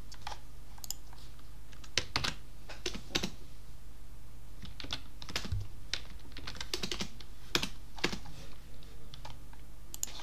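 Typing on a computer keyboard: irregular keystrokes in short clusters with pauses between them, over a steady low hum.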